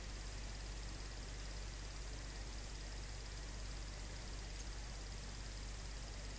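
Bench-top pulse motor running steadily: a faint, even hiss with a low hum and a thin high steady tone, no separate clicks or beats.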